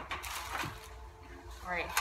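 A brief scrape as a metal baking sheet is pulled across a stone countertop, then a quiet stretch.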